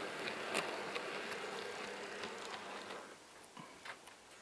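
Small electric motor and wheels of an EFE Rail Class 143 Pacer model train buzzing steadily as it runs along the track, with a few faint clicks. The sound fades over the last second as the train moves away.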